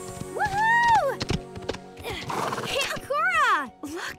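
A horse whinnies, a quavering call that falls in pitch about three seconds in, over steady background music. Near the start there is a long drawn-out call that rises and then falls.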